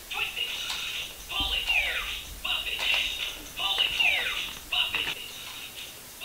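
Video game audio from a television: repeated falling, whistle-like sweeps about every two seconds over a busy, band-limited din, with a low thud about one and a half seconds in.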